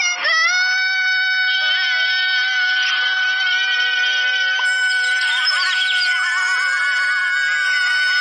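A cartoon character's voice letting out one long, high cry held at a steady pitch, starting just after the opening, with fainter wavering sound mixed in underneath.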